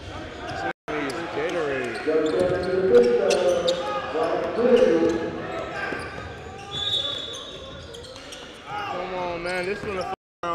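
Basketball bouncing on a hardwood gym floor during play, under overlapping shouts and talk from players and the bench, with a brief cut to silence about a second in.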